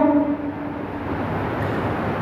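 A pause in a man's amplified sermon: his last drawn-out syllable fades out at the very start, leaving a steady low hum of room noise until speech resumes just after.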